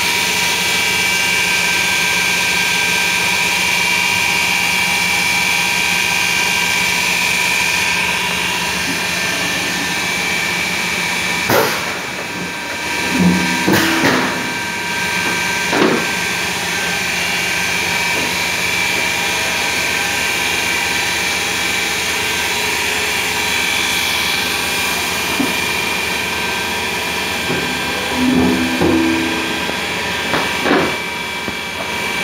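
Blister packing machine running in automatic operation: a loud, steady hum with several fixed tones. Short clanks and knocks of the machine's cycle come in a cluster a little before the middle and again near the end, about fifteen seconds apart.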